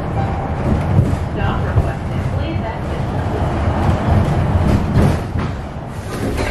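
Passenger-cabin noise of a moving city bus: a steady, deep engine and road rumble.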